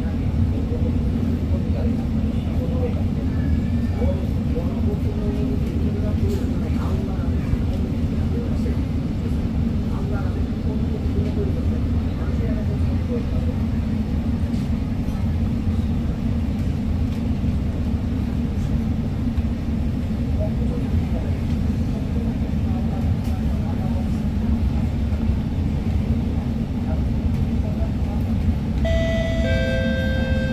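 Steady low hum inside a stopped Alstom MOVIA R151 metro car with its doors open, with faint passenger chatter. Near the end an electronic door-closing chime starts, warning that the doors are about to close.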